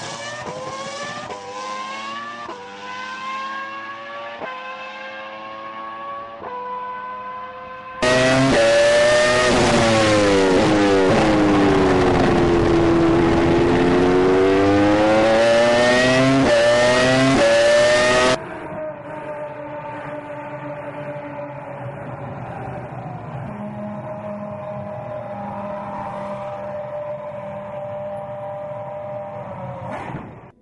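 Red Bull Formula One showcar's V8 engine accelerating away through a quick series of upshifts, the pitch climbing and dropping back at each gear change. About eight seconds in it becomes much louder, heard from on board: the note falls for a corner and climbs again under acceleration. After about ten seconds that cuts to a quieter, steadier engine note.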